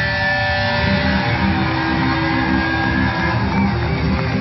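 Metal band playing live: electric guitars holding sustained notes over fast, dense drums and bass.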